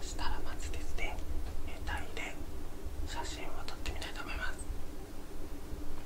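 A man whispering a few short phrases close to the microphone, stopping near the end, over a low steady rumble.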